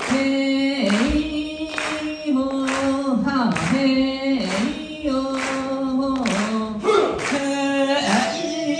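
Voices chanting an Ainu dance song unaccompanied, the group holding long notes that dip in pitch at the end of each phrase. Sharp strikes come in a regular beat, about one a second.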